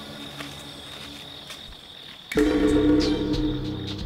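Crickets chirping steadily. A little over two seconds in, loud background music comes in abruptly, with sustained low notes.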